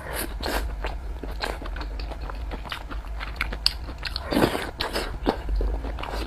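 Mouth sounds of chewing a mouthful of pork belly and rice: a close, irregular run of short wet clicks and smacks, louder about four and a half seconds in.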